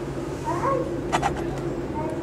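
Indoor shop ambience: a steady low hum, a short high call with a bending pitch about half a second in, then a quick pair of sharp clicks just after a second.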